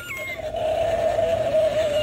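Battery-powered animated LED skeleton pet toys (Halloween decorations) playing their electronic sound effect through a small speaker. It is a thin, wavering squeal with a few short falling chirps at the start.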